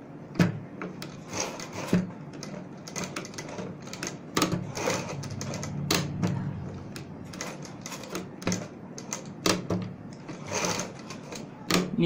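Sewing machine stitching slowly alongside a pearl-bead lace, a steady low hum with irregular clicks and knocks of the needle mechanism. It is run gently because a hurried stitch near the pearls can break the needle.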